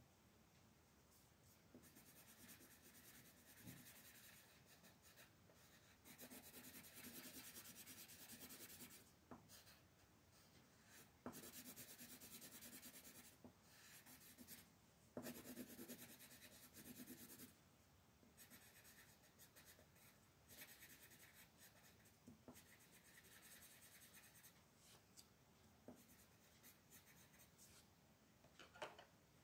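Colored pencil scratching on coloring-book paper in quiet shading strokes, coming in stretches of a few seconds with short pauses between them.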